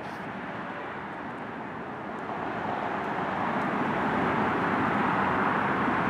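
Tesla Model S electric car rolling slowly forward with nobody inside, driving itself under its Summon feature. It makes a steady rushing sound that grows louder over the second half as the car draws close.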